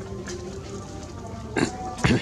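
A macaque giving one short grunt about one and a half seconds in, over a steady low background with faint held tones.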